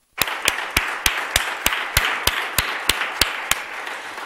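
Audience applauding at the end of a speaker's talk. One set of claps stands out louder and sharper than the rest at about three a second. The applause starts right after a brief silence and tails off near the end.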